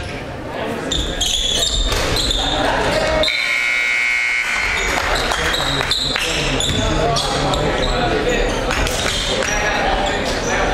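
Indoor basketball game sounds in a gym: sneakers squeaking on the hardwood court, a basketball bouncing, and a steady murmur of spectator and bench voices. A long high-pitched tone lasting about a second comes a few seconds in.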